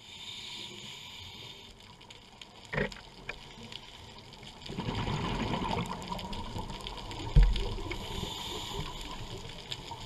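Underwater sound heard through a camera housing: a scuba diver's exhaled bubbles rumbling for about a second around the middle, with a short knock earlier and a sharp thump shortly after the bubbles, which is the loudest moment.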